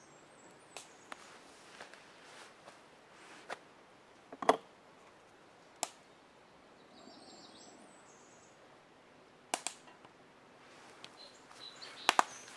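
Quiet outdoor ambience broken by a handful of sharp clicks and snaps, the loudest about four and a half seconds in and two close together near the end. A bird sings a short run of high falling notes about seven seconds in.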